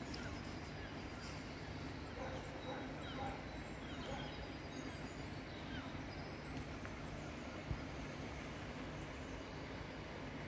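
Outdoor woodland ambience: faint, scattered bird chirps over a steady low rumble, with one sharp tap about three-quarters of the way through.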